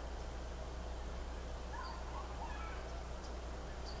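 Steady low hum and hiss of background noise, with a few faint bird chirps about two seconds in.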